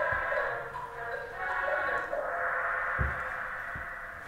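Muffled, thin-sounding audio playing from a small loudspeaker, with two low thumps about three seconds in.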